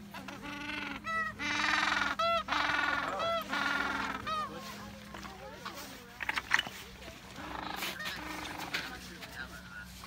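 Gentoo penguins calling in their nesting colony: a run of loud, harsh braying calls, each a quick series of pulses, from about half a second in to about four and a half seconds, then quieter scattered calls.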